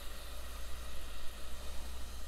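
Balsamic vinegar at a rolling boil in a saucepan, a steady crackling sizzle of bubbles as a wooden spoon stirs it, with a low steady hum underneath. It is being reduced, just turned down from a boil toward a simmer.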